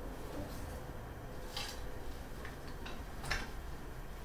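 Handbags being handled and pulled apart: a few short, sharp clicks and rustles over a low steady room hum.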